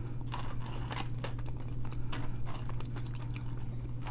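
A person chewing a mouthful of fast food, with small crunches and many short mouth clicks, over a steady low hum.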